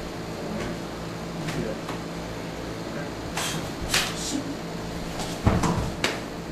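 A person being thrown down onto the training floor: two brief sharp sounds of the scuffle a few seconds in, then a heavy thud of the body landing near the end.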